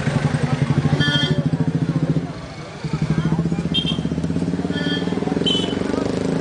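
Motorcycle engine running close by with a fast, even pulse, dropping away for about half a second a little over two seconds in and then picking up again, over crowd voices and a few short high-pitched blips.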